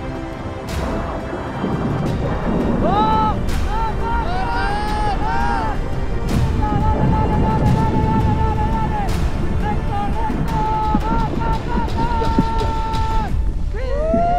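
Deep, continuous rumble of a powder avalanche pouring down the mountainside. From about three seconds in, a person shouts long, high calls over it.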